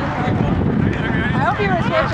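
Several people's voices talking and calling out over a steady low background rush of outdoor noise.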